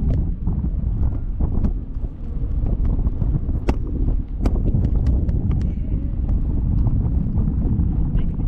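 Wind buffeting the microphone of a camera mounted on a parasail rig in flight, a steady low rumble, with irregular sharp clicks and knocks from the rig.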